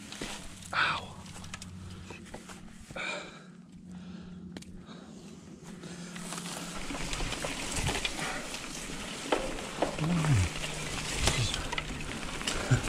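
A mountain bike pushing through overgrown grass and brush, with vegetation rustling steadily against the wheels and frame. The noise grows louder from about halfway through. The rider makes short breathy grunts early on and a falling groan a couple of seconds before the end.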